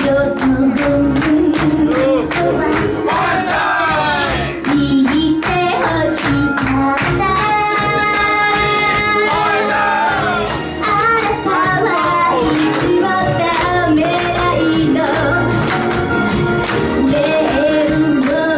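A woman singing Shōwa-era Japanese pop into a handheld microphone over backing music, with a long held tone about halfway through.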